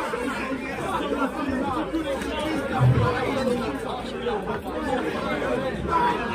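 Chatter of a crowd of people talking at once, a steady babble of many overlapping voices.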